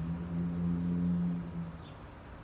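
A man's voice holding a long, steady low hum or drawn-out "uhh" while he hesitates, stopping shortly before the end.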